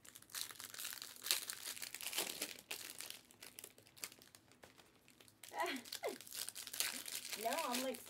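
Plastic wrapping on trading-card product crinkling and tearing as it is opened, in a dense run of rustles over the first few seconds that then eases off. A voice comes in briefly near the end.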